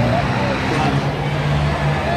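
Engines of cars circling a short oval speedway, heard as a steady low running sound, with voices in the background.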